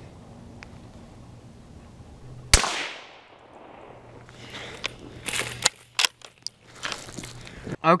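A single shot from a scoped Marlin .22 rimfire rifle about two and a half seconds in: one sharp crack with a short ringing tail. Scattered quieter clicks and rustles follow near the end.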